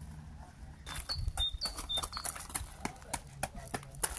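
Footsteps crunching on gravel, starting about a second in as a run of irregular short crunches. A few brief bird chirps sound over them in the middle.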